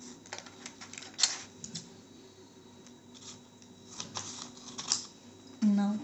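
A folded paper sheet being opened out and handled: scattered sharp crackles and clicks, the loudest about a second in, with a few more around four to five seconds in.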